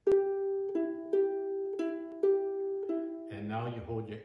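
Ukulele picked one string at a time, alternating between two notes, G on the E string and E on the C string's 4th fret, in a long-short rhythm. There are six notes, each left to ring. A man's voice comes in near the end.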